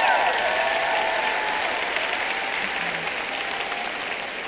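Audience applauding and laughing after a joke, the applause slowly dying down toward the end.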